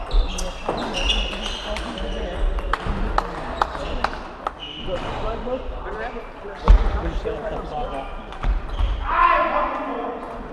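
Table tennis balls clicking off bats and the table in quick, irregular rallies, with a heavier thump about two-thirds through.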